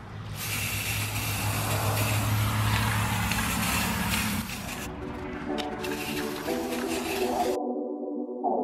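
Aerosol can of metallic spray paint hissing in one long burst of about four and a half seconds as paint is sprayed onto a figurine. A few clicks follow, then background music comes in.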